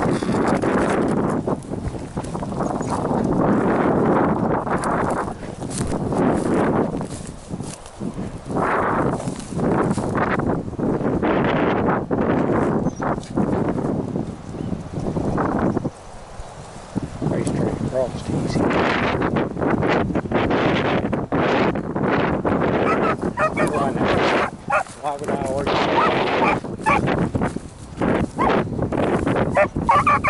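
Gusting wind buffeting the microphone in swells and lulls, with dry grass and brush rustling and crackling as they are walked through. A beagle bays faintly on and off near the end.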